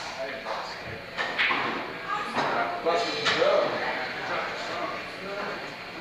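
Indistinct talking from several people between songs, with a few short knocks.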